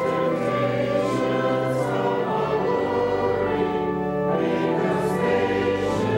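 A choir singing a slow hymn in long held chords, with sung consonants now and then.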